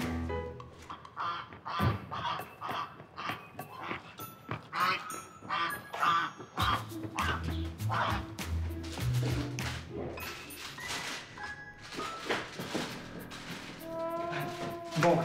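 Background music with a plodding low bass line, over repeated quacking, honking calls of a waterfowl kept in a covered bamboo basket.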